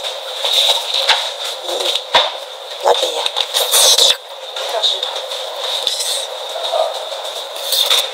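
Thick honey sauce being poured over braised meat: scattered soft clicks and wet, sticky sounds over a steady hiss and a faint high whine.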